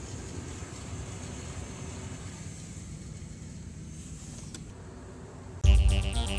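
Steady low rumble inside a car's cabin. Near the end, loud synth music suddenly cuts in.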